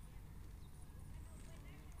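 Faint low background rumble and hiss, with no distinct event.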